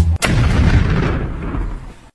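A single sharp boom about a quarter second in, with a long noisy tail that fades away over the next second and a half.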